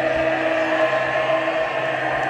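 A steady held electronic tone from the stage PA, several pitches sustained at once, over the noise of a concert hall crowd while the song's intro builds.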